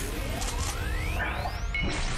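Cartoon alien-transformation sound effect from the Omnitrix: a thin electronic whine sweeping steadily upward in pitch for most of two seconds, over a dense low backing.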